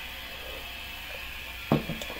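Quiet, steady room hum, with one short, louder sound near the end that sounds like a brief breath or voice.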